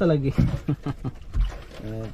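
Men laughing in short, broken bursts after a few spoken words, with a voice starting again near the end.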